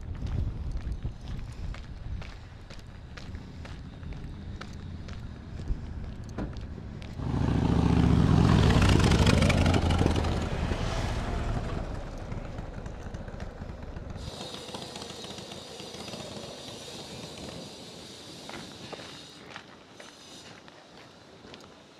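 A motorcycle and a car pass close by. The motorcycle engine's low, even sound comes in suddenly about seven seconds in, is loudest for a couple of seconds and then fades away over several seconds. Light footsteps on pavement tick away underneath.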